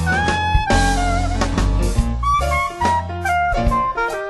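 Blues band playing an instrumental passage with no singing: a lead instrument carries a melody with sliding notes over bass guitar, piano and drum kit.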